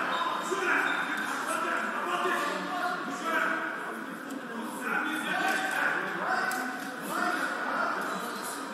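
Indistinct talking: voices speaking throughout, with no clear words.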